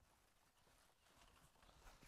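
Near silence: faint background hiss only.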